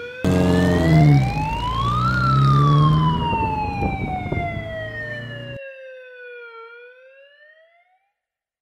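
A siren wailing: one slow rise, a long slow fall, then starting to rise again near the end, fading out. Under it, a lower sound runs for the first five and a half seconds and then cuts off abruptly.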